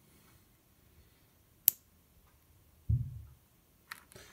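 A single sharp click of a small push-button switch on the light controller, switching the model plane's LED lights on, followed about a second later by a short low bump of the model being handled.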